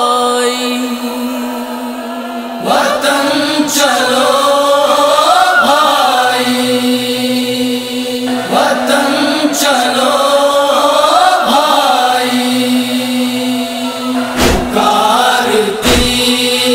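A noha, a Shia mourning lament: a man's voice chanting long, wavering phrases over a steady held drone. For the first couple of seconds only the drone sounds, then the voice comes in.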